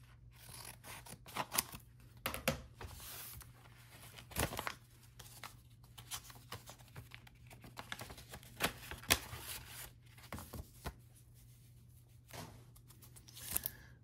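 Scissors snipping through a paper mailer envelope, then paper rustling and crinkling as the envelope is handled and opened, in a run of short, sharp snips and scrapes.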